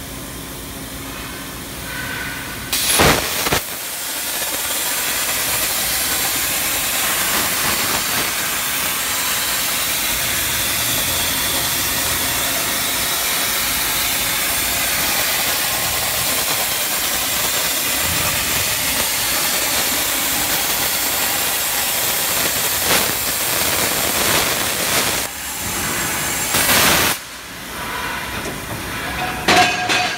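CNC plasma cutting torch cutting a round hole in steel plate: loud pops as the arc starts and pierces the plate about three seconds in, then a steady, loud hiss of the cutting arc that stops abruptly a few seconds before the end.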